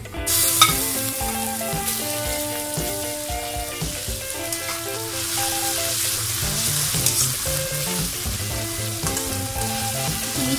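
Garlic and ginger paste hitting hot oil and fried onions in a wok, sizzling suddenly about half a second in and then frying steadily. A metal spatula stirs and scrapes it around the pan.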